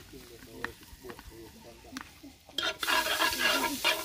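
Butter sizzling in a hot pot over a wood fire as it is stirred, with a few light clicks of the spoon against the pot. The sizzling is faint at first and gets suddenly much louder about two and a half seconds in.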